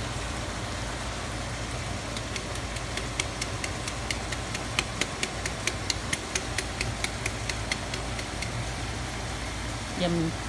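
Tomato sauce crackling and popping in a hot frying pan, a quick run of sharp pops about four a second that starts a couple of seconds in and dies away near the end, over a steady low hum.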